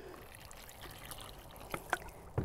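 Water pouring from a plastic pitcher into a bucket of dry sand and Portland cement, a faint steady trickle, with a light tap near the end.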